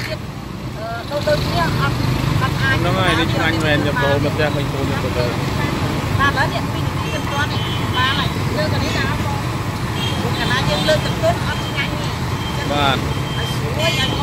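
Battered food deep-frying in a large wok of hot oil, a steady bubbling hiss over a constant low rumble, with voices talking over it.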